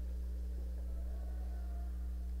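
A steady low hum with nothing else heard.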